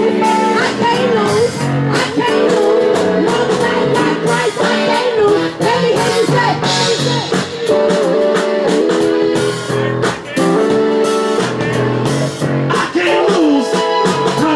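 Live band music over a PA, with a steady drum beat under held chords and a gliding melody line.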